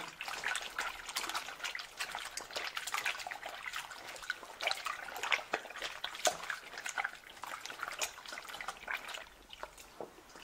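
Raw beef intestines being kneaded and rubbed by hand in flour-thickened water in a stainless steel bowl: irregular wet squelching and splashing. They are being cleaned with flour and liquor to lift off grease.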